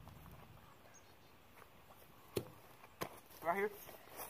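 Two sharp knocks a little over half a second apart during a ground-ball fielding drill, a baseball striking and landing in a leather fielding glove, over faint outdoor background. A short spoken word follows near the end.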